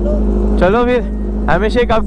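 Sport motorcycle engine idling steadily, a constant low hum under nearby voices.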